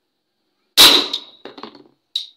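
Acetylene gas from calcium carbide and water ignites inside a plastic bottle with one sharp bang about three-quarters of a second in, blowing off the steel tumbler capping it. A ringing metallic clang follows the bang, then the tumbler clatters as it lands.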